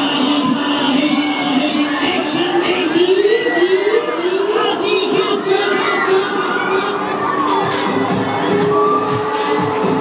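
Riders on a spinning Break Dance fairground ride shouting and cheering, over loud ride music.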